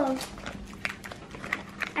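A few light clicks and rustles of small packaged craft supplies being handled, over a faint steady hum.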